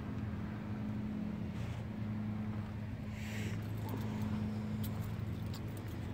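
A steady low mechanical hum, even in level, with a brief hiss about halfway through.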